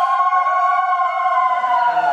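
Conch shells blown together as a ritual call, two or more long held tones overlapping, with slow bends in pitch.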